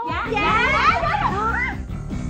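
Several women's high voices calling out excitedly at once, overlapping one another, as stage music cuts in suddenly at the start.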